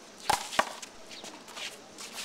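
Two sharp smacks of a small rubber handball in play, about a third of a second apart, followed by a few faint light taps.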